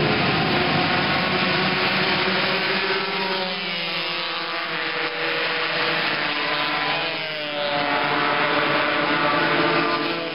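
Sport motorcycle engines running at high revs as bikes pass along a racetrack straight, their pitch sliding as each one goes by, twice over.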